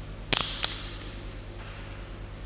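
A quick cluster of sharp clinks and knocks, then a single one just after, with a short bright ringing tail: communion vessels being handled and set down on the altar close to the altar microphone.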